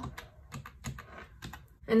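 Keys of a plastic desktop calculator pressed with a pen tip, a quick series of light clicks as a subtraction is keyed in.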